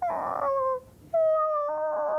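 A man's mock wailing cry, imitating a starving creature begging for food: a short falling wail, then a long, steadily held one.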